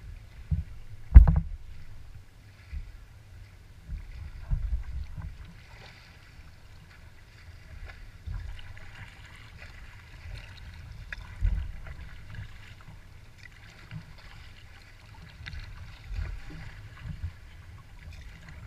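Small waves slapping and lapping against the bow of a moving kayak on choppy lake water, heard as irregular low thuds every second or few over a faint splashing. A single sharp knock on the hull about a second in is the loudest sound.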